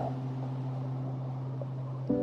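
Soft background score: a steady low drone of held tones with a faint hiss, with no change or event.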